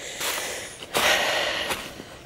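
Heavy breathing of a person climbing a slope on foot: two breaths, the second starting sharply about a second in.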